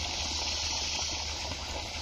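Steady rush of flowing water with a low hum beneath it.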